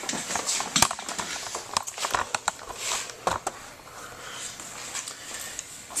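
Irregular knocks and clicks of handling noise as equipment and camera are moved about on a workbench.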